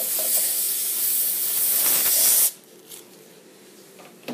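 Dental three-way air-water syringe blowing compressed air to dry a freshly rinsed, prepared tooth: a steady, loud hiss that cuts off suddenly about two and a half seconds in.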